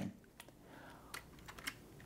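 A few faint, separate computer keyboard keystrokes, a single one about a second in and a quick pair near the end.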